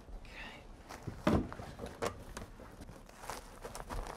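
Hands working a foil-jacketed insulated flex duct onto a metal duct fitting: crinkling and rustling of the foil jacket with scattered knocks, the loudest thump about a second in.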